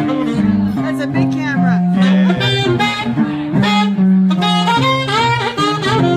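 Small jazz group playing live, a saxophone carrying the melody over a bass line that steps from note to note.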